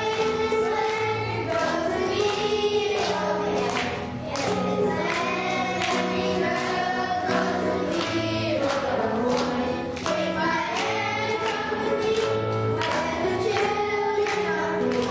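A children's choir singing a song over an instrumental accompaniment, with a steady bass line repeating beneath the voices.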